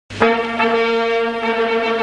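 Orchestral music: one loud brass-led note held steady, cutting in abruptly just after the start.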